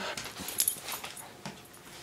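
A dog licking: a few short clicky licking sounds, most of them in the first second, then quieter.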